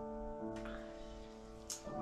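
Soft background music: a few sustained instrument notes, with new notes coming in about half a second in and again near the end.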